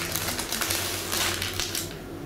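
Baking parchment rustling and scraping against the countertop as it is pulled from under a baked puff-pastry apple cake.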